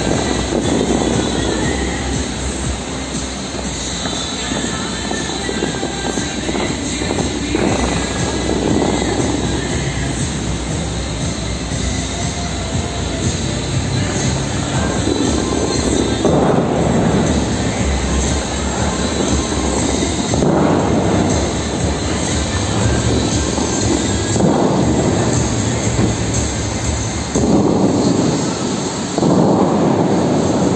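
Bellagio fountain water jets rushing up and crashing back into the lake in a loud roar that surges in waves every few seconds, with the fountain show's music underneath.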